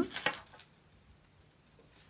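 A few light metallic clicks from a small metal keyring snap hook being handled and clipped, all within the first half second.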